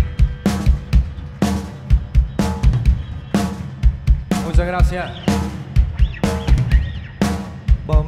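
A live rock band playing: the drum kit keeps a steady beat, a sharp snare hit about once a second with kick-drum thuds between, under electric guitar. A singer's voice comes in briefly around the middle.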